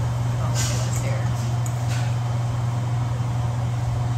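A steady low hum, with two brief soft noises about half a second and two seconds in.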